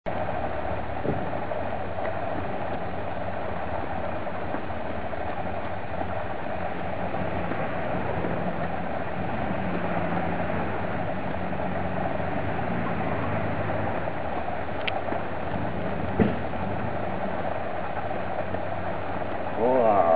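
Steady outdoor background noise, with a couple of single soft knocks and a brief vocal exclamation with bending pitch near the end.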